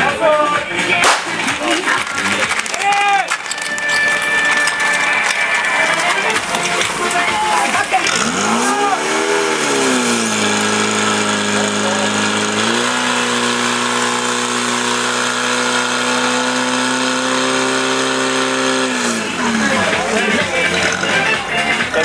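Portable fire pump engine revving up about eight seconds in, then running at steady high revs, pumping water out to the hose lines. The revs step up once more a little later and drop away about three seconds before the end.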